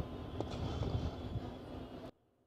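Steady low outdoor rumble picked up by the stadium's open field microphones, with one sharp click about half a second in.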